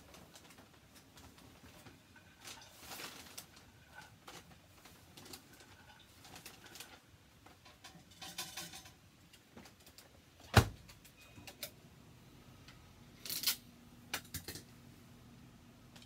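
Faint clinks and rattles of pecans being stirred in a dish inside an over-the-range microwave. About ten and a half seconds in comes one sharp clack, the loudest sound, as the microwave door is shut, and then a brief rustle with a few clicks.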